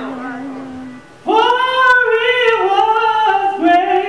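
A woman singing solo into a microphone: a low held note, then about a second in a much louder, higher phrase of long held notes that step down in pitch.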